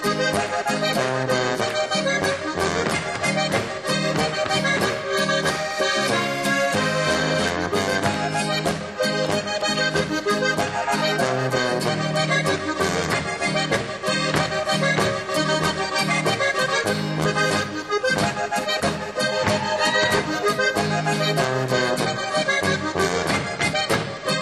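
Alpine folk band playing a Boarischer: button accordions carry the tune over tuba bass and guitar chords, in a steady, even dance beat.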